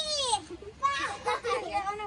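Young children's voices: a high voice glides down in the first half second, then several children talk and call out over one another.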